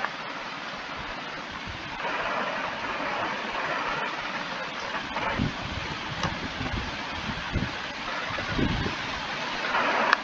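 Steady background noise, a little louder from about two seconds in, with a few soft low thumps later on.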